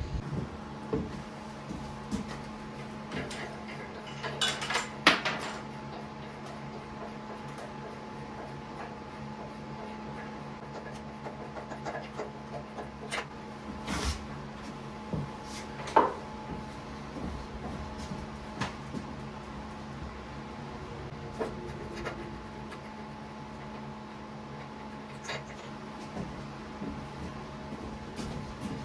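Scattered clicks and light metal clinks as the tractor bonnet's hold-down knobs, bolts and washers are unscrewed and handled, over a steady faint hum.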